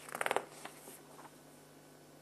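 A brief rattle of rapid clicks near the start, lasting under half a second, followed by a couple of faint clicks.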